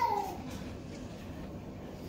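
A single short, high, falling vocal call right at the start, then quiet room tone.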